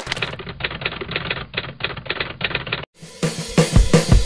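Typewriter key clacks, a quick irregular run of strikes played as a sound effect, stopping abruptly just under three seconds in. Music with guitar and drums starts right after.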